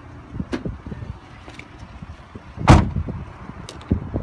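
A car door shut with one loud thud about two-thirds of the way in, after a few faint knocks and clicks.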